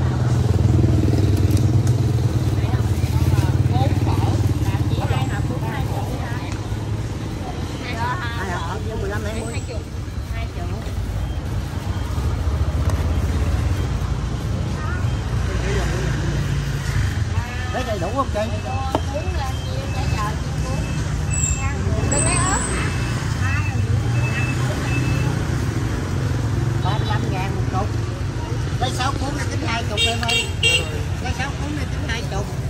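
Motorbike engines running in busy street noise, a low rumble that is strongest in the first few seconds and again in the second half, with people talking around it.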